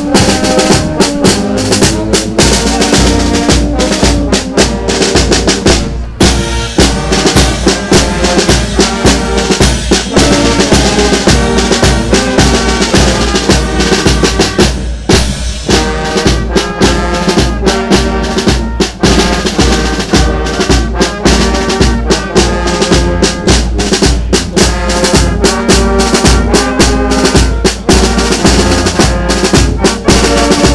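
Carnival street band of brass and drums playing, with snare and bass drum keeping a steady beat under the horns; the music drops out very briefly twice, about six and fifteen seconds in.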